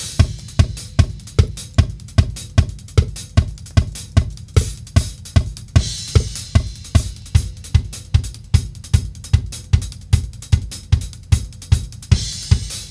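Multitrack drum-kit recording played back after quantising with Pro Tools' Beat Detective: a steady kick-driven groove of about three hits a second with snare and hi-hat, and cymbal crashes near the start and again about six seconds in.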